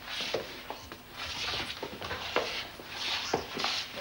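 Clothes rustling and scuffing against the corridor floor as a person rolls along it, in repeated short bursts with a few light knocks.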